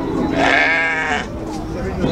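A sheep bleating once, a wavering call of about a second, over background voices.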